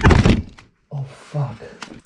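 Handling noise from a camera grabbed and moved by hand: a loud thump at the start, then muffled knocks and rubbing with a single click near the end, broken by a brief silent gap just before a second in.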